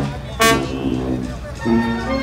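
Brass band playing: a short, loud brass blast about half a second in, then held notes from about a second and a half.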